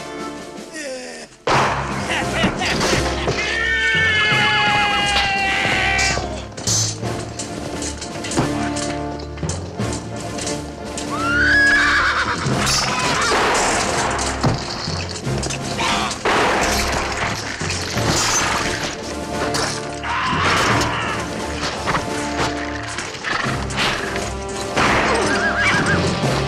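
Horses neighing several times over loud film-score music, in a mounted charge.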